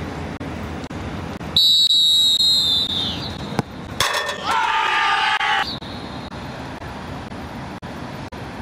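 A referee's whistle blown in one long, steady, shrill blast lasting about a second and a half, signalling that the penalty kick may be taken. About a second later a long, high shout rings out, over the steady murmur of an outdoor football ground.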